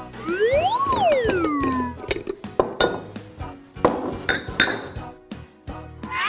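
A whistle-like cartoon sound effect that glides up in pitch and back down, followed by a string of sharp clinks and knocks from ceramic bowls and a spoon being handled, a few of them ringing briefly.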